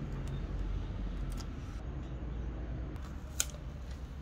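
Clear plastic transfer film holding a vinyl number decal being handled and pressed onto a painted metal plate: soft crinkling and light finger taps, with one sharp click about three and a half seconds in, over a steady low hum.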